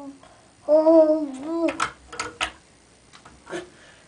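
A toddler's wordless voice: one drawn-out, sing-song 'aah' lasting about a second. A few light knocks follow, like hands and feet bumping the vanity as the child climbs.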